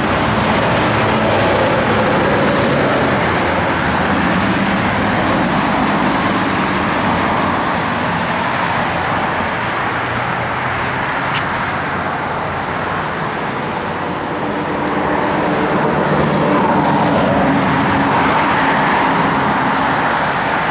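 Steady road traffic: passing cars with engine notes rising and falling, dipping slightly past the middle and swelling again over the last few seconds.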